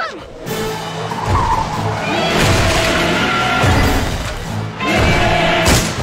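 Film soundtrack: dramatic music under loud, noisy action sound effects that come in three long surges, among them a vehicle driving up.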